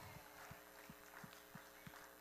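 Near silence: room tone with a steady electrical hum and faint, regular low thumps about three a second.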